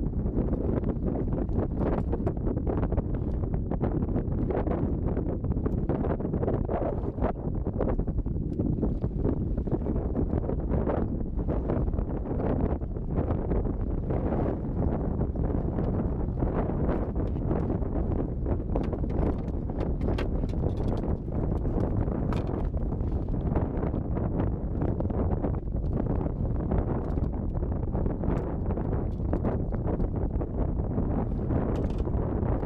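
Strong wind buffeting the microphone without a break, over choppy lake water lapping and slapping against a small boat's hull, with many brief splashy knocks.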